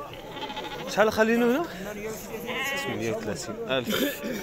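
Sheep bleating close by: a loud call about a second in, then a quavering bleat around two and a half seconds in.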